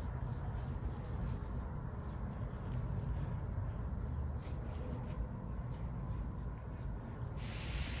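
Faint soft scratching of a Chinese painting brush stroking raw xuan paper, over a steady low room hum; a louder hiss comes in near the end.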